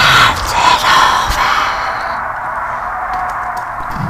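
A breathy vocal sound, like a sigh or gasp, fading away into a faint steady hiss during a break in the song.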